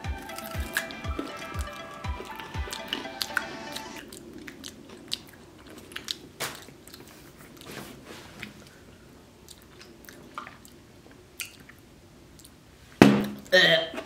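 Close-up chewing and crunching of a crunchy green snack, with a steady run of crisp crunches, about three a second, in the first few seconds, then slower, fainter chewing. Soft background music plays under the first few seconds, and a short loud vocal sound comes near the end.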